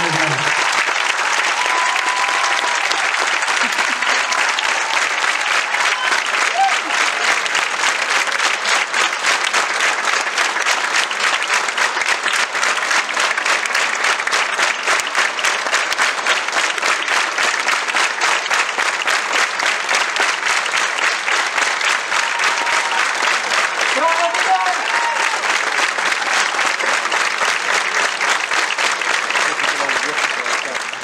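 A large theatre audience applauding steadily: a dense wash of many hands clapping.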